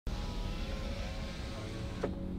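Steady road and engine noise heard from inside a moving car's cabin: a low rumble with a hiss on top.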